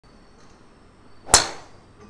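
Golf driver striking a teed ball: one sharp crack at impact, a little over a second in, fading quickly.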